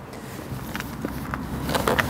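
Footsteps on a tarmac car park strewn with leaves over a low outdoor rumble, then a few light clicks in the second half from hands feeling for a car's bonnet catch.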